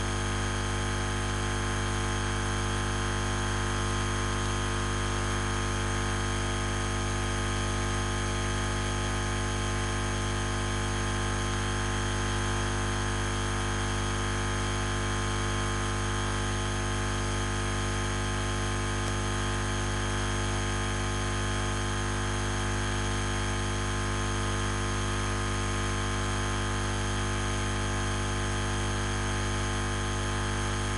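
A steady, unchanging hum with a hiss beneath it, with no separate events.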